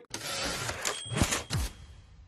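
Dramatized sound of a football being kicked off a kicking tee: a rushing noise with two deep, falling thuds a little over a second in.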